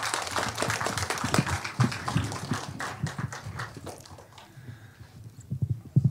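Applause from the audience, a dense patter of hand claps that thins out and dies away about four seconds in.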